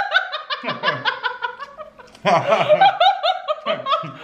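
A woman and a man laughing together in quick, repeated bursts. The laughter comes in two bouts, the second starting about two seconds in.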